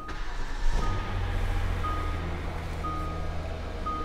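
Kia Cadenza's 3.3-litre V6 engine started with the key, catching under a second in and then idling with a steady low hum. A short electronic dashboard chime beeps about once a second throughout.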